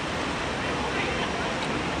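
Steady rushing outdoor noise with a low, irregular rumble, and faint voices in the background.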